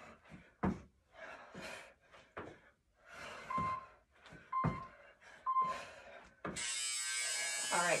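Workout interval timer signalling the end of a work interval: three short beeps about a second apart, then a long buzzer lasting about a second and a half. Between and under them, panting and thumps of hands and feet on the rubber floor during burpees.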